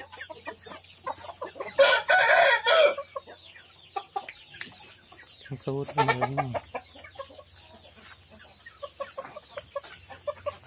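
A young Samurai-breed cockerel crows once, a loud call of a little over a second starting about two seconds in. Softer clucks and small calls from the flock come before and after it.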